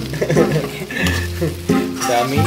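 Fried rice being stirred and turned with a spatula in a metal pan, scraping and sizzling, under a song with singing and a steady bass line.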